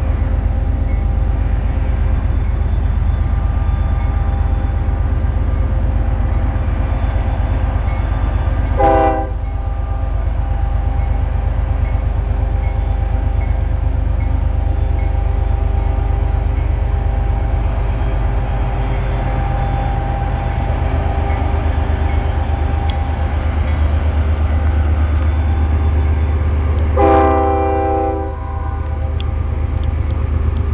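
Union Pacific freight train with General Electric and EMD diesel locomotives: a steady low rumble with engine drone. Two blasts of a locomotive air horn, a short one about nine seconds in and a longer one near the end.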